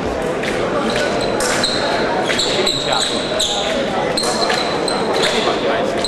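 Fencing shoes squeaking and tapping on the piste during footwork in an épée bout: many short high squeaks and light steps, several a second, over a steady murmur of voices in a large hall.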